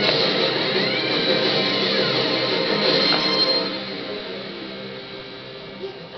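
Background music playing, dropping much quieter a little past halfway.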